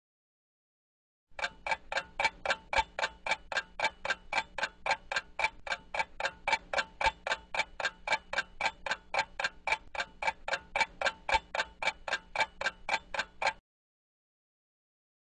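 Clock ticking steadily at about four ticks a second, starting about a second in and stopping shortly before the end.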